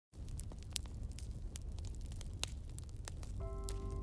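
Wood fire crackling in a fireplace: irregular sharp pops and snaps over a low rumble. Near the end, music comes in with held keyboard notes.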